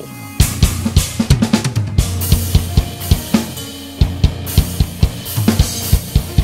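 BFD3 virtual drum kit playing back a steady groove: kick and snare strikes under hi-hat and cymbal wash.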